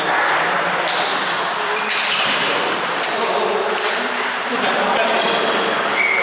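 Table tennis balls being hit and bouncing on tables around a large hall, with voices in the background.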